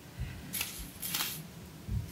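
Craft handling: two short, crisp rustles as wire flower stems and paper card are moved about on a table, with soft low bumps near the start and end.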